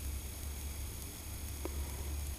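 Vintage CRT television running with a steady low hum and a faint high-pitched whine from its flyback transformer, now sealed and no longer arcing. One faint tick about one and a half seconds in is the slight crackle that remains.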